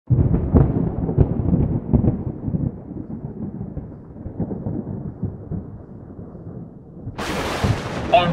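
Deep rumbling sound effect, thunder-like, opening with several sharp cracks and slowly dying away, then a short burst of hissing static near the end.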